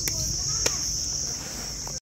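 Steady, high-pitched insect chirring, with two sharp clicks: one near the start and one about two-thirds of a second in.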